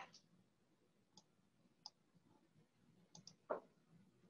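Near silence broken by a few faint, sharp computer mouse clicks spread through it, with one slightly louder short knock about three and a half seconds in.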